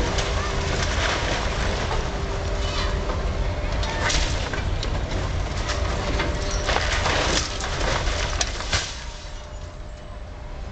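Demolition excavator running with a heavy rumble as its attachment tears into the building, with cracks and crashes of breaking timber and falling debris, the biggest between about 7 and 9 seconds in; the noise drops off near the end.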